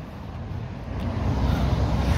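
Low rumble of road traffic, growing louder about a second in.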